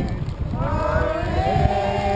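Group of voices singing an old Inuit whaling song in long held notes, pausing briefly before a new note slides in about half a second in. Wind rumbles on the microphone.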